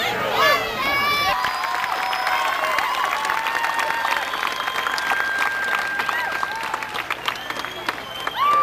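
An outdoor audience applauding: many hands clapping in a dense patter, with crowd voices mixed in. The clapping takes over after about a second and a half of voices.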